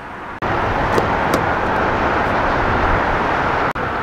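Steady road traffic noise that cuts in suddenly about half a second in and stops abruptly just before the end.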